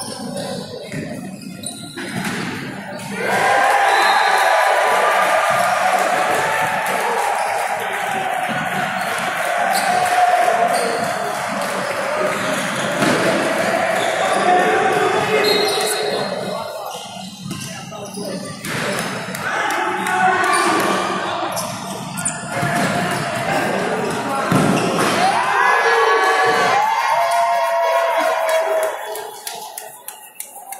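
Futsal ball being kicked and bouncing on a wooden sports-hall floor, with sharp knocks throughout, under players' shouts and calls that run from about three seconds in until near the end, echoing in the hall.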